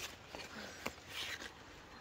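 Faint rustle of strawberry leaves being pushed aside by hand, with a couple of small clicks.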